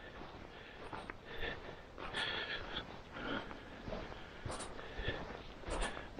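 Faint sounds of a person walking over frosted grass: irregular footsteps and breathing, about one sound a second.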